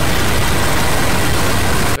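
A loud, steady, harsh rumbling noise with no clear pitch, filling the whole range, which cuts off abruptly at the end.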